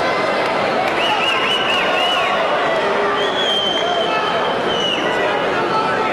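Arena crowd shouting and cheering during a fight, many voices at once, with a few high-pitched calls rising above the din.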